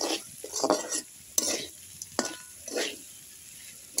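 Metal spatula stirring a bitter gourd and potato fry in a metal pan: about five scraping strokes against the pan over a light sizzle, with one sharp metallic tap a little past two seconds in.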